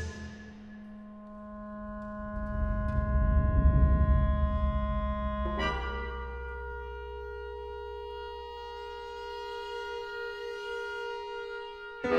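Chamber ensemble of piano, strings, winds and percussion playing contemporary concert music. A chord struck just before rings on in held notes while a low rumble swells and fades. About five and a half seconds in, a new chord enters and is held steady.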